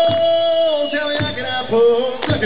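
Male singer holding one long sung note that ends about a second in, over a strummed acoustic guitar; further guitar strums follow.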